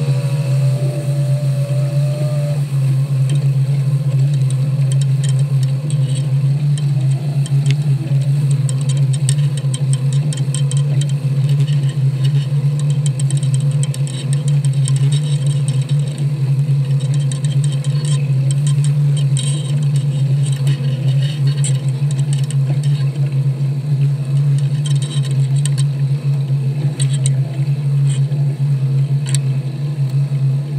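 Outboard motor idling with a steady low hum while the boat works crab pots, with a short rising whine in the first couple of seconds. Light clinks and rattles of the wire crab pot and gear come through over the hum.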